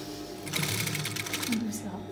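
Industrial sewing machine stitching in a short burst of about a second, the needle running fast and steady, then stopping.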